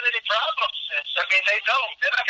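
A man speaking over a telephone line. The call audio is thin, with the low end cut away.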